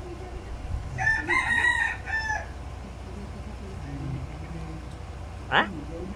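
A rooster crowing once, a stepped call of about a second and a half starting about a second in. A brief sharp sound follows near the end.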